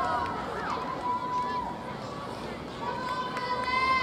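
Spectators' voices calling out across an open football pitch, with long drawn-out high calls about a second in and again near the end.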